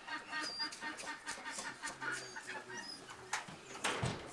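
Chickens clucking in quick, repeated calls, with a sharp knock just before the end.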